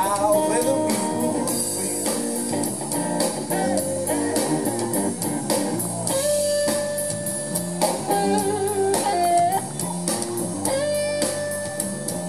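Slow electric blues guitar solo on a custom guitar built from a car muffler, played live with a drum kit. It has sustained, bent lead notes, several held for about a second with a wide wavering vibrato in the second half.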